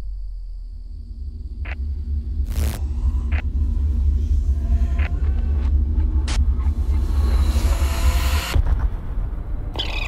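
Horror-trailer sound design: a deep, steady rumbling drone with several sharp hits over it, building into a rising hiss-like swell that cuts off suddenly about eight and a half seconds in.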